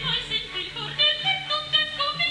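Operatic singing in a comic-opera duet: a voice in quick, short, detached notes, with orchestra underneath.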